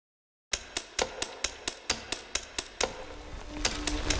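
A run of sharp, evenly spaced clicks, about four a second, starting half a second in and stopping at about three seconds, followed by a faint steady low tone near the end.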